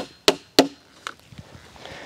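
Hammer driving a plastic cap nail through plastic sheeting into a wooden skid: three sharp strikes about a third of a second apart, then a few faint taps.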